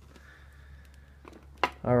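A quiet pause with a faint steady hum, broken by a couple of light clicks. A man starts talking just before the end.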